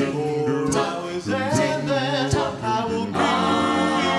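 A cappella doo-wop group of male and female voices singing in close harmony into microphones. About three seconds in, the voices swell into a fuller, held chord.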